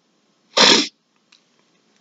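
A single short, sharp burst of breath from the man, about half a second in.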